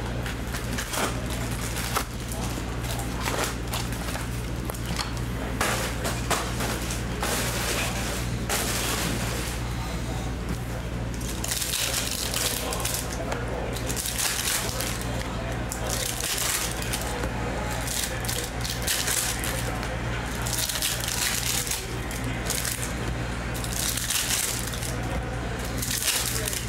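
Foil trading-card packs being ripped open and crinkled by hand, one after another: repeated short tearing rasps and longer crackling rustles over a steady low hum.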